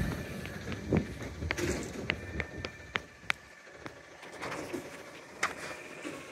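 A garbage truck idling faintly some distance down the street, with scattered light clicks and taps close by.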